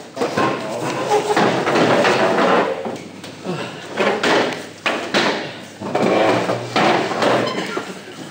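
Indistinct voices mixed with repeated knocks and rustling handling noise.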